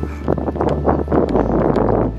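Wind buffeting the camera microphone, a loud, irregular rumble.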